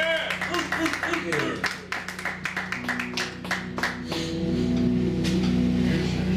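Live electric bass guitar and drum kit playing loud and fast, with rapid drum and cymbal hits. About four seconds in, the drumming thins out and held bass notes ring on.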